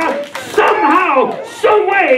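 A man preaching loudly into a microphone in a strained, exclaiming voice whose pitch swoops up and down, with a brief pause just before the end.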